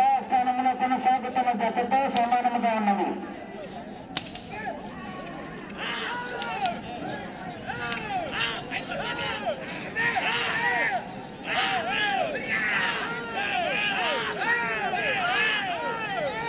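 Men shouting to urge on a pair of bulls in a pulling contest: one long drawn-out yell at the start, then short rising-and-falling shouts repeated about twice a second. A couple of sharp cracks come in the first few seconds.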